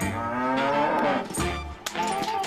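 A cow mooing: one long call lasting about a second, over background music.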